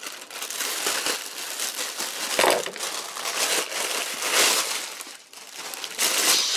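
Thin plastic shipping mailer and a clear plastic bag crinkling and rustling as hands open the mailer and pull out what is inside, with louder rustles about two and a half and four and a half seconds in.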